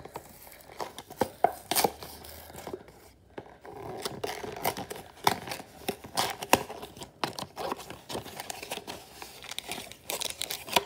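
Cardboard hanger box of trading cards being torn open by hand along its end flap, a run of ripping and crackling that grows denser and louder about halfway through, with the crinkle of the foil card packs as they are pulled out.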